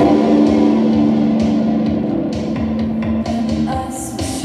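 Live rock band playing: guitar chords held over drums and cymbals, loudest as a new chord comes in at the start.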